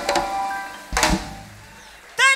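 Live Latin band ending a number: the last notes die away, then a single closing percussion hit with a ringing tail lands about a second in and fades.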